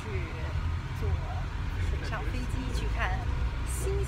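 Steady low rumble of a moving bus heard from inside the cabin, under a woman's talking.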